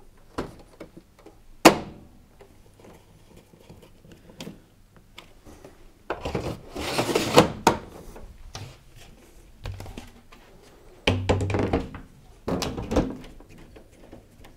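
A tumble dryer's plastic control panel being pushed home: a sharp click as a tab snaps in, then several longer bouts of thunks and scraping knocks as the panels are pressed and fitted into place.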